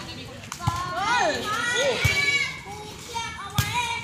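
Players' high-pitched shouts and calls during a volleyball rally, with three sharp smacks of the ball being hit, the last and loudest near the end.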